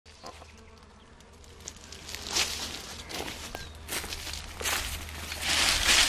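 Footsteps on dry dirt ground: a few separate scuffing steps, getting louder toward the end.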